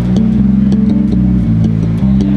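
Spector electric bass played through an amp: a melodic run of plucked notes changing every fraction of a second, with light string and fret clicks between the notes.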